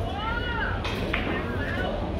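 Indistinct voices in a large hall. One high arching call rises and falls in the first half-second, and two sharp clicks come about a second in.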